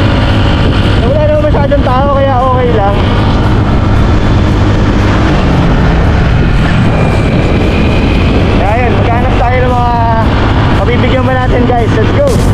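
Motorcycle engine running steadily on the move, mixed with wind noise. A man's voice comes through at a few points without clear words.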